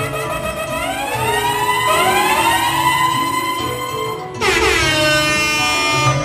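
DJ sound effects over dance music: several siren-like sweeps rising in pitch and overlapping, then, about four seconds in, a loud horn blast that slides down in pitch.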